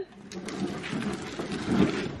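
Hard plastic wheels of a child's ride-on toy rattling as it rolls over rough concrete.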